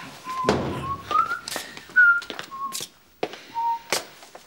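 A person whistling a short tune of about half a dozen brief notes that step upward and then drop. A dull thump sounds about half a second in, with a few sharp knocks around the notes.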